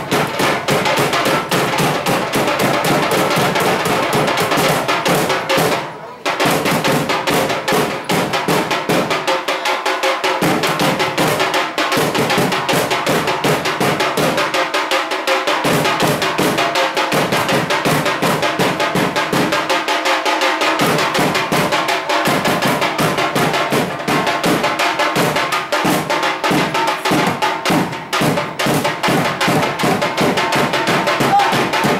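Loud festival drumming: rapid, continuous drum beats, with a brief break about six seconds in.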